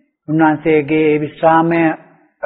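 An elderly Buddhist monk's male voice reciting in a slow chanting cadence: three phrases on long, held, level notes.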